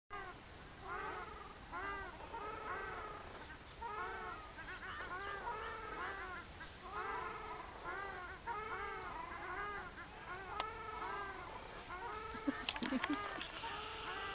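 Ruddy shelducks calling: a long series of nasal, honking calls, each rising then falling in pitch, about two or three a second. A few sharp clicks come near the end.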